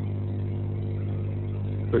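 A pause in speech filled by a steady low hum with a few overtones above it, unchanging throughout.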